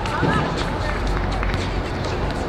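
A brief high-pitched shout at the very start, then the scuffing footsteps of players running on a hard outdoor court over a steady low city rumble.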